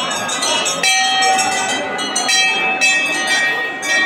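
Hanging brass temple bell rung over and over, a fresh strike about every half second, each one ringing on into the next.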